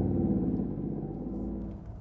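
Toyota GR Yaris 1.6-litre turbocharged three-cylinder engine heard from inside the cabin, running steadily at light throttle and easing off slightly toward the end. At this gentle load it has a small, unassuming thrum, like a base-model Aygo.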